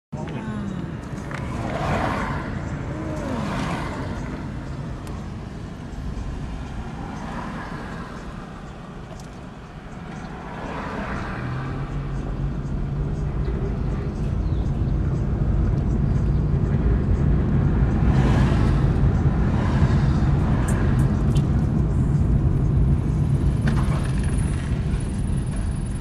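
Traffic and engine noise from a car moving slowly in town traffic: a continuous low rumble, with a steady engine drone that comes in about halfway through and grows louder.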